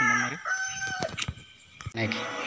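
A rooster crowing: the long crow, begun just before, ends on a held note about a second in.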